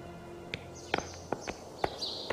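Footsteps on a hard stone floor, a series of light taps, as sustained background music fades out about halfway through.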